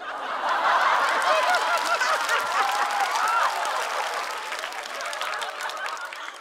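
Studio audience laughing and applauding at a punchline, many voices and hand claps together, loudest in the first few seconds and dying away toward the end.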